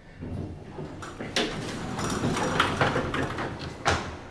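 Schindler elevator's sliding doors closing, the chain-driven door operator running with a rattle of small clicks and ending in a sharp knock near the end.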